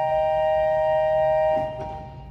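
Pipe organ holding a sustained chord that is released about one and a half seconds in, leaving a brief lull.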